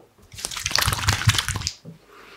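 Palms rubbed briskly together, spreading a liquid product: a dense run of quick wet rubbing noises lasting about a second and a half.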